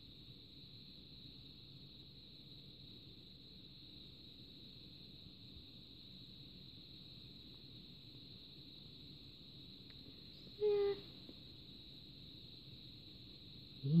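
Quiet room tone with a steady faint high-pitched hiss, broken once about ten and a half seconds in by a brief voice sound; speech begins right at the end.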